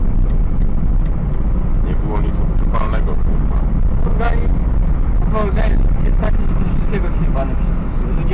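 Steady low rumble of road and engine noise inside a car cruising at speed, with brief fragments of a person's voice.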